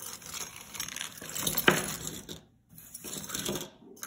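A heap of metal costume-jewellery brooches and pins scraping and clinking against one another as a hand sweeps them off a cloth-covered table, with one sharper clack a little before halfway and a short pause just after.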